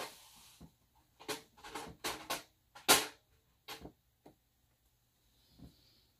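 A string of irregular clicks and knocks from handling ink bottles among art supplies, the sharpest about three seconds in.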